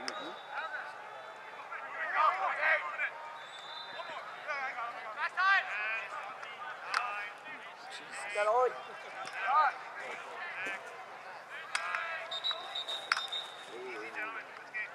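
Voices of players and spectators calling and shouting across an outdoor lacrosse field, with occasional sharp clacks.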